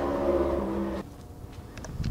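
A steady motor hum with a low rumble that cuts off about halfway through, followed by a few faint clicks near the end.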